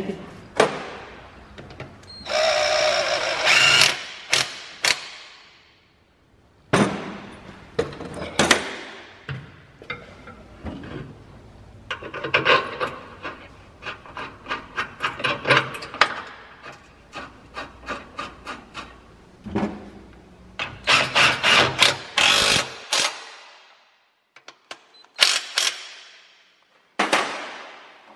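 A cordless impact wrench whirs briefly, rising in pitch, as it runs in the bolt of a new engine mount. Later come quick runs of clicking from a hand ratchet snugging the bolt, with knocks of metal tools.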